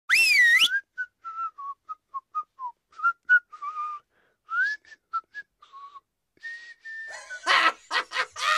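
A person whistling: a loud warbling whistle at the start, then a string of short whistled notes and a held note. Laughter begins about a second before the end.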